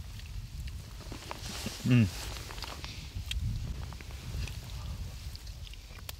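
People eating from a metal pot: faint scattered clicks of utensils and chewing, with a contented 'mmm' about two seconds in, over a low steady rumble.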